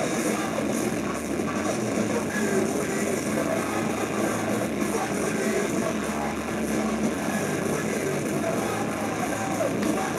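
A punk rock band playing live: distorted electric guitars and drums at full volume, steady and continuous, heard from the audience floor.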